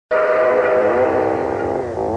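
A loud held chord of several steady tones sounding together, starting suddenly and wavering slightly in pitch.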